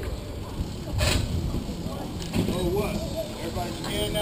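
Steady low wind-and-road rumble on a handlebar-mounted action camera as a bicycle rides along, with a short sharp knock about a second in. Snatches of passers-by's voices come through, mostly in the second half.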